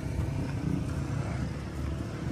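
Street traffic noise: a steady low rumble of motor vehicles running nearby, with no single vehicle standing out.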